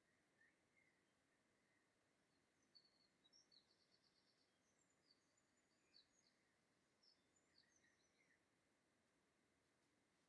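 Near silence: room tone, with faint high bird chirps and a short rapid trill scattered through the middle.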